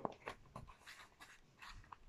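Faint rustling of a picture book's cover and paper pages as it is opened and the pages are turned, with a few soft ticks.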